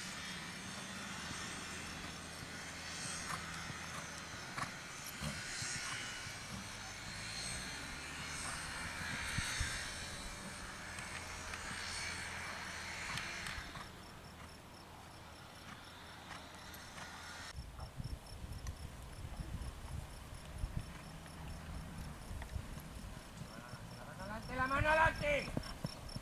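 Crickets chirping steadily, with faint hoofbeats of a horse cantering on an arena's sand and a rustling hiss over the first half that stops about halfway through. A voice speaks briefly near the end.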